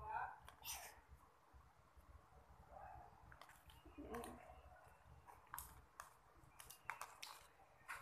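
Near silence, broken by a few faint, scattered clicks of a metal spoon against a plastic cup and soft mouth sounds while eating.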